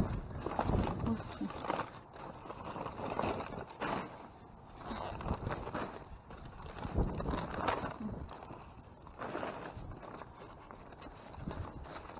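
Plastic bags and food packaging rustling and crinkling in irregular bursts as they are rummaged through and shifted about, with items knocking against plastic crates.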